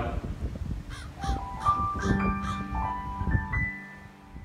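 A bird calling five times in quick succession, crow-like caws, over soft piano music whose sustained notes begin about a second in.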